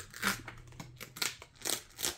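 Paper pages of a booklet rustling as they are turned and handled, in a few short rustles.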